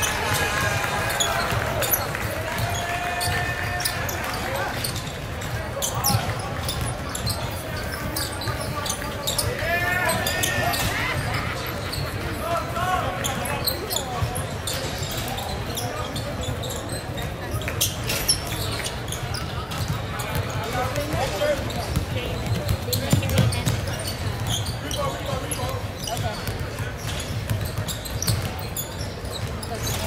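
Live high school basketball game in a gym: the ball dribbling on the hardwood floor in repeated bounces, sneakers squeaking, and players and spectators calling out over the echoing hall noise.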